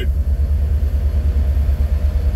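Steady low vehicle rumble heard from inside the cabin of a soft-top vehicle, with no other distinct sound over it.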